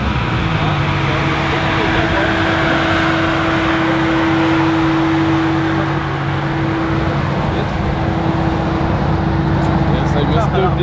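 BMW M4's twin-turbo straight-six idling with a steady drone after a donut session, the revs falling away at the very start. People are talking around it.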